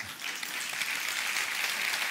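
Large seated audience applauding, the clapping swelling steadily louder.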